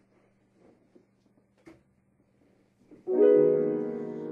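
Near silence with a faint steady hum for about three seconds, then a piano chord struck and left ringing as it slowly fades.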